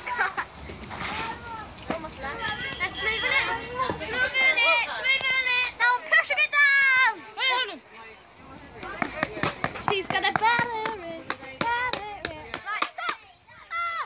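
Young children's voices: high-pitched, excited chatter and calls while they play, with short pauses about eight seconds in and near the end.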